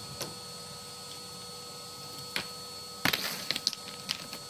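Chimney sweep's rods knocking and clattering as they are worked through a dust sheet into the stove's flue: a single click near the start, another midway, then a quick run of knocks about three seconds in. A vacuum cleaner runs steadily underneath.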